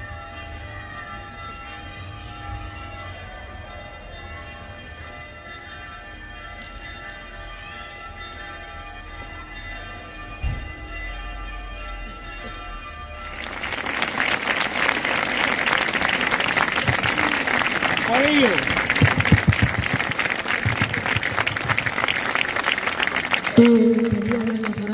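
A crowd stands hushed while bells ring with steady, held tones. About thirteen seconds in the crowd breaks into loud applause that ends the minute of silence.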